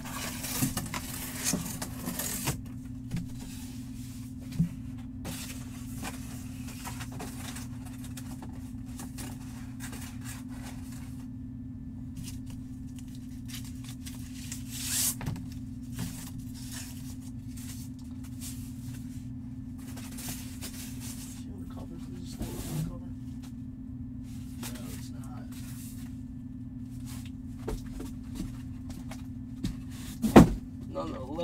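Cardboard and paper packaging being handled and opened, with irregular rustles and scrapes, over a steady low electrical hum.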